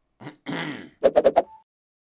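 A man clearing his throat, followed about a second in by four quick, sharp knocks in a row, the loudest sound here, and a brief faint tone after them.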